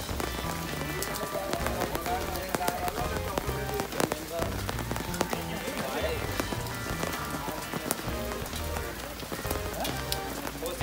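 A dense crackling patter like rain falling on a surface, over background music with a stepping bass line, with voices now and then.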